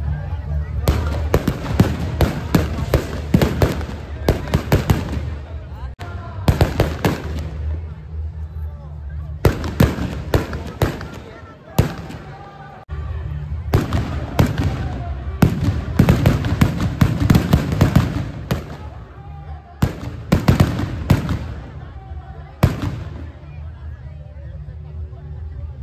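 Firecrackers packed in a burning Ravana effigy going off in rapid crackling strings of bangs, in bursts of a second to several seconds separated by short lulls, with the last single bang near the end.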